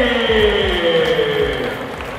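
Music: a long held note sliding slowly down in pitch, with low thuds underneath.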